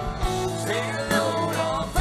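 Live rock band playing: electric guitars over bass and drums, with a lead line of bending notes in the middle.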